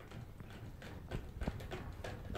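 Toy poodle drinking from a nozzle-type water bottle hung on its crate, lapping at the spout with quick, irregular clicks, several a second.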